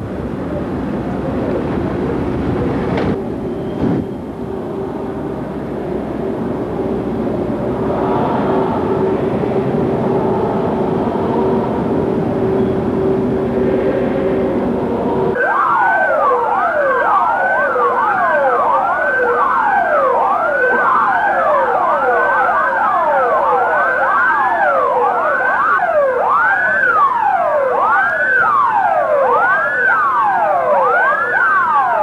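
Several vehicle sirens wailing together, their rising and falling sweeps overlapping out of step. They start abruptly about halfway through, after a steady noisy background with a low hum.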